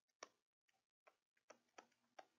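Near silence with four faint, sharp clicks, the first the loudest: a stylus tapping on a tablet as a word is handwritten.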